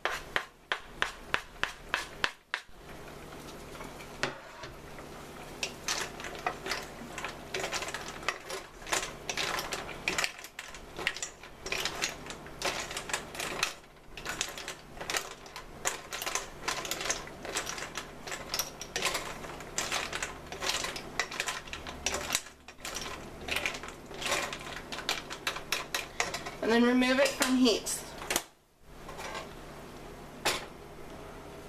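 Steamed clams being stirred with a wooden spoon in a stainless steel pot: a long run of quick, irregular clicks and clatters as the shells knock against each other and the pot's side.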